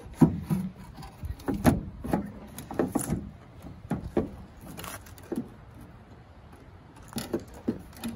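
Plastic tail-light housing of a Dodge Ram pickup being handled and fitted back against the truck body: an irregular string of light knocks and clicks with some rubbing, easing off briefly in the later part before a couple more clicks.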